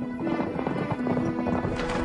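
Horses' hooves galloping, a dense run of hoofbeats that begins at the start and thickens near the end, over background film music with held notes.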